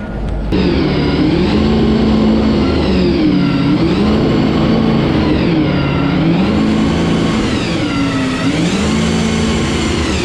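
A Supercars race car's V8 engine being revved in the garage. It rises smoothly to a held high note and drops back down about four times.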